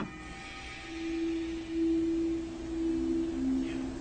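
Held electronic synthesizer notes: one steady pure tone comes in about a second in, and a second, slightly lower tone joins it near the end, like a musical sound cue between segments.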